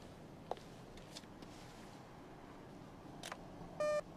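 A few faint footsteps, then near the end a short, loud electronic beep from a bank cash machine (ATM) as a card goes into its slot.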